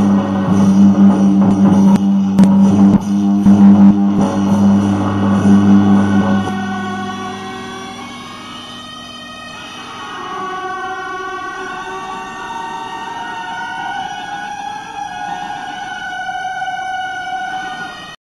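Beiguan ensemble music, Taiwanese temple wind-and-percussion music: loud held tones with struck percussion, dropping after about six seconds to a quieter passage of held melodic notes.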